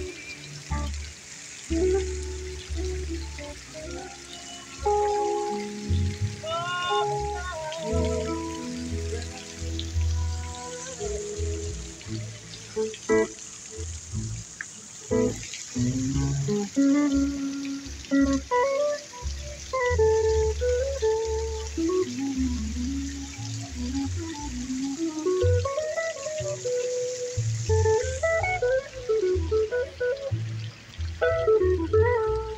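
Live electric guitar and plucked upright double bass playing a tune without vocals, the bass sounding steady low notes beneath the guitar's melody line.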